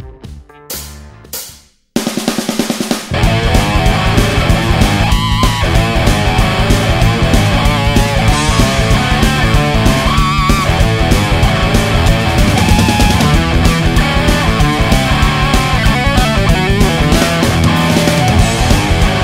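Distorted electric guitar playing a hard rock boogie shuffle in A over a backing track with a rock drum kit. A couple of short hits and a brief gap come first, then the full band comes in about two seconds in.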